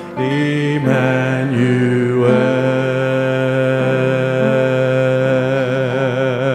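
Worship song sung with piano accompaniment: long held sung notes with a wavering vibrato over sustained piano chords, the chords changing about a second in and again near two seconds.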